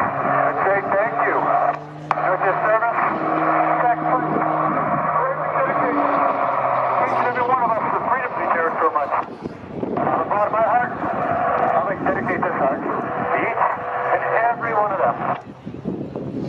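A man's voice over public-address loudspeakers, echoing and hard to make out, with held low tones beneath it during the first few seconds.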